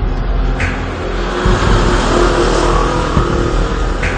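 A motor vehicle driving past on the road, its engine and road noise swelling through the middle and easing off near the end.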